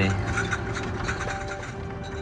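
Low steady road and engine noise inside a moving car's cabin, under soft held background-music notes.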